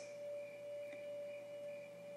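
Quiet background music holding a single steady ringing tone.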